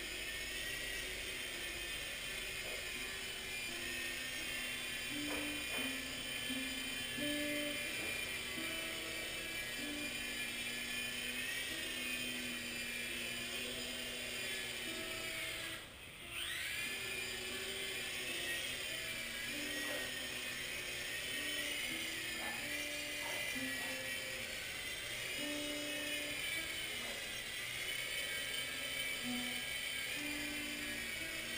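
Blade mCX micro coaxial helicopter's electric motors and rotors whining steadily in flight, the pitch wavering with throttle; about sixteen seconds in the whine drops away sharply and spools back up. A tune plays alongside.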